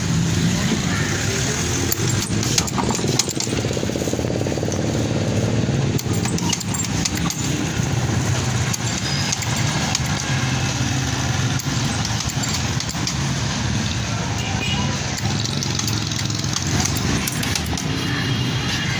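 Intermittent clunks and knocks of a hand-lever french fry cutter as raw potatoes are pressed through its blades, over a steady rumble of street traffic and engines.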